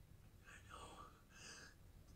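Faint, whispered male speech from the show's soundtrack, a man quietly saying "I know", over a low steady hum.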